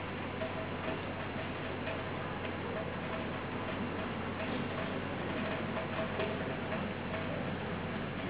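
A regular ticking signal, a short tone repeating a few times a second, over steady background noise and a low hum.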